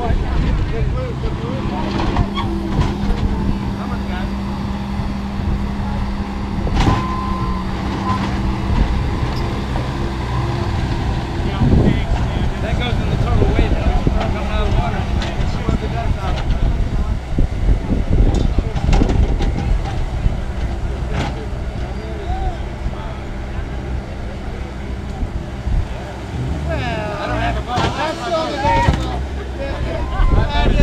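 Compact track loader's engine running steadily as it works, with a few sharp knocks along the way.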